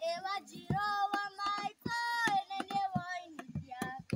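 Children singing a folk song in held, sliding notes, cut through by sharp percussive strikes at uneven intervals.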